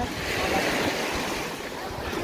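Sea surf washing onto the beach: a single wash of noise that builds in the first second and then eases off.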